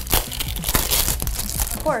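Small cardboard blind boxes being opened and the foil packets inside crinkled and torn open: a dense run of crackles and rustles.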